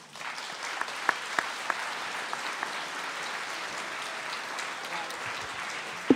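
Audience applause, starting abruptly and holding steady, with a dense patter of individual claps.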